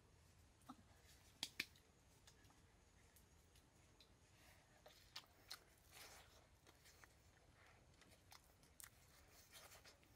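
Faint mouth sounds of people biting and chewing soft fruit: scattered short, sharp smacks and clicks over a quiet hiss. Two come close together about a second and a half in, and a few more between five and six seconds.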